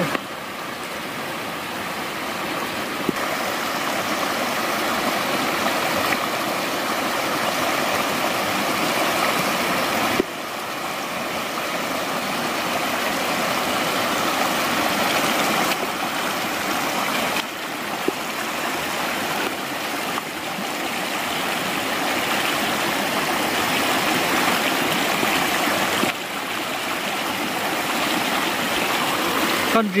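A shallow, rocky mountain stream rushing and rippling over stones in a steady wash of water noise, its level changing abruptly a few times.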